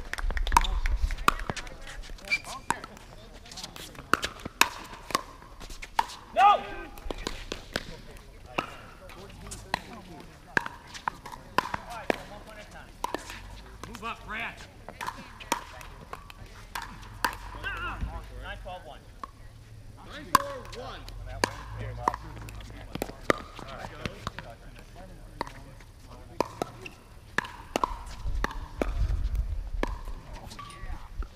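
Pickleball rallies: hard paddles striking the plastic ball, many sharp pops at irregular intervals, some in quick runs.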